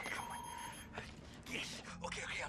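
Electronic beeps from a sci-fi control console: a brief high tone, then a lower warbling tone about half a second long. A click follows about a second in.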